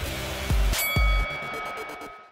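Closing logo sting: two deep hits about half a second apart, then a bright bell-like chime that rings on and slowly fades.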